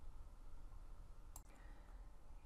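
Near silence: faint room tone with a single small click about one and a half seconds in.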